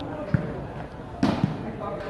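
Volleyball thudding: a dull thud, then a sharp, loud slap a little past halfway with a smaller thud just after, over the chatter of a watching crowd.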